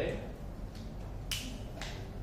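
Two short, sharp clicks about half a second apart, over a low room hum.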